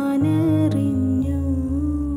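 A woman singing one long held note over a soft plucked-string and bass accompaniment; the note's brightness fades after about a second.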